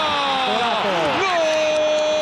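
A football commentator's drawn-out goal shout as Cristiano Ronaldo scores: the voice slides down in pitch and then holds one long, steady note.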